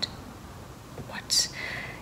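A pause in a woman's talk to camera: quiet room tone at first, then a brief breathy hiss a little past halfway, as of a breath or a whispered onset before she speaks again.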